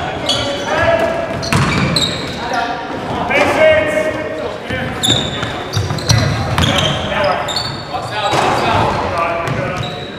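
Indoor basketball game: a ball bouncing on the hardwood court and players' voices calling out, echoing around the gym.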